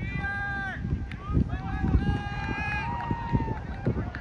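Players' voices shouting long, drawn-out calls across the field, several in a row, with wind buffeting the microphone as a low, uneven rumble.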